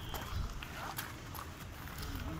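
Footsteps of people climbing on rock: a few irregular hard steps and scuffs.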